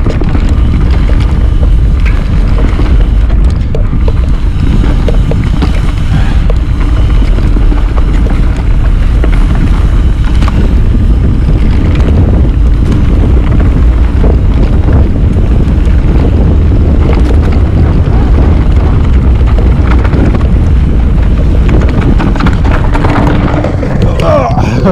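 Wind buffeting the microphone of a camera on a Trek Remedy mountain bike descending fast on a dirt singletrack, a loud, steady rumble. Through it run the knobbly tyres on the dirt and frequent short knocks and rattles of the bike over roots and bumps.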